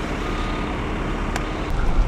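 Heavy truck engines running in a steady rumble, with a faint reversing-alarm tone sounding on and off and a single click about a second and a half in.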